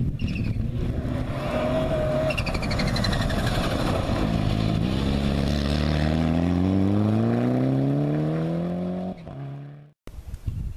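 Fiat Punto rally car driven flat out on a gravel stage, its engine working hard as it slides past. Over the second half the engine pulls through one long rising rev climb, then the sound cuts off abruptly.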